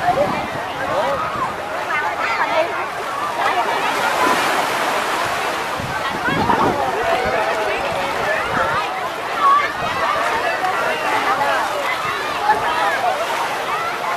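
Many voices of a crowded beach, children and adults shouting and chattering over one another, with small waves washing in and water splashing.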